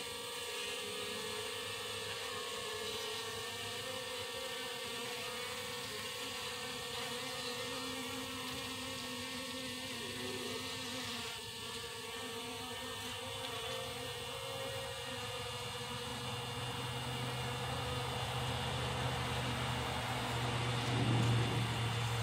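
Honeybee colony humming steadily from the cluster of worker bees on the comb. The hum swells louder over the last several seconds, a change in the colony's tone as they react to their dead queen placed among them.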